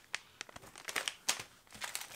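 Plastic bags of soft-plastic fishing worms crinkling as they are handled, a scatter of short, irregular crackles.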